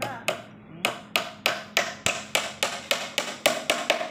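Hammer tapping repeatedly on the wooden housing of a homemade corn sheller, about three light strikes a second, beginning about a second in.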